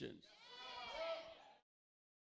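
A faint, high-pitched voice calls out once for about a second, rising and falling in pitch.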